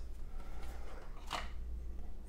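Quiet room tone with a steady low hum, and one short, soft rustle a little past the middle.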